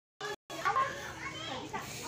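Background chatter of several voices, children's among them. The sound cuts out completely twice in the first half-second.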